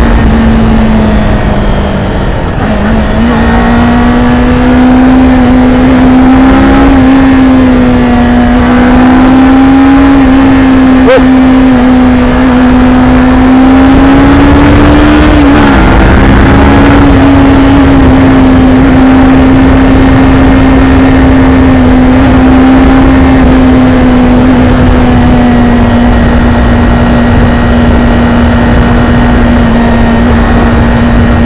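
Kawasaki Ninja 400 parallel-twin engine pulling steadily at highway speed, loud over heavy wind noise on the microphone. Its note climbs slowly and dips briefly twice, a couple of seconds in and again around the middle, as the throttle eases or a gear changes, then settles steady.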